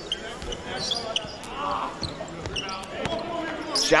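Basketball bouncing on a hardwood court, a few separate knocks, with short squeaks and faint voices in the background of an echoing arena.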